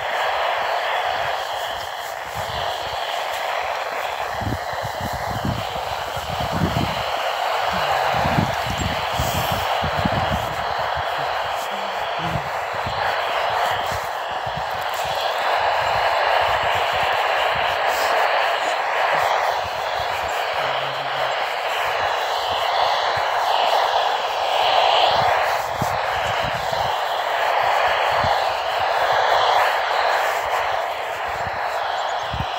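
Static from a weak NOAA Weather Radio broadcast coming out of a small weather radio's speaker, with a faint voice buried in the hiss. There are a few low thumps in the first ten seconds.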